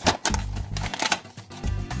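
Background music, over a run of sharp clicks and taps from a cardboard-and-plastic toy box being handled.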